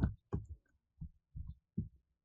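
Computer mouse clicking through the desk: about six soft, low clicks in two seconds, the first two the loudest.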